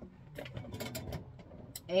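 A few light clicks and a soft rustle as a dress form wearing a denim jacket is turned around on its stand.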